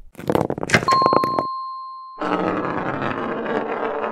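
Cartoon sound effects: a quick run of grunts and clicks, then a steady beep about a second in that lasts about a second. After the beep comes a long, rough growl or roar that lasts the rest of the time.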